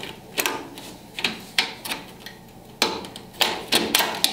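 Irregular sharp metallic clicks and knocks from aluminium Ranger trim on an Early Bronco door being worked off its clips.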